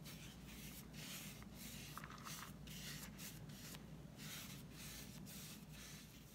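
Flat paintbrush stroking acrylic paint onto the hard shell of a gourd in long strokes: a faint, quick swish repeated about twice a second.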